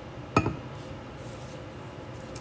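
A single short clink about half a second in, from a drinking cup or glass being set down after a sip of water, over a faint steady room hum.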